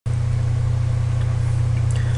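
A loud, steady low hum that does not change.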